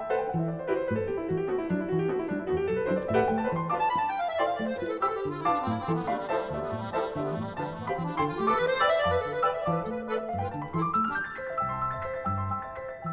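Grand piano and a Hohner piano accordion playing a chamber piece together: the piano plays sweeping runs that fall and then climb in pitch, twice, while the accordion holds long tones through the middle.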